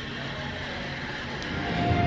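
Steady background hum and hiss, with background music fading in near the end.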